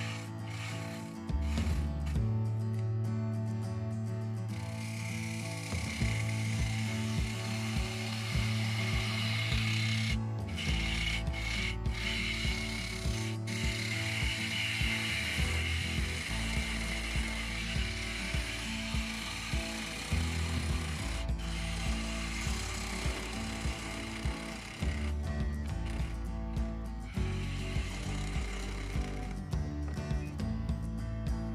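A bowl gouge cutting the rim of a spinning spalted birch bowl on a woodturning lathe: a steady rushing shear of wood, broken by a few brief pauses in the cut about a third of the way in. Background music plays underneath.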